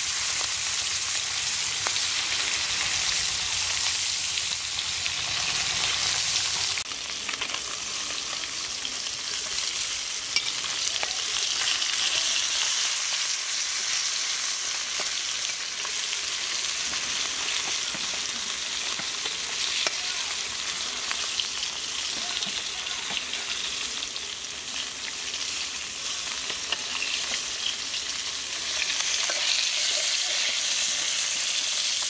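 Whole anabas (climbing perch) sizzling steadily as they shallow-fry in hot oil in an iron kadai. A metal spatula scrapes and clicks against the pan now and then as the fish are turned.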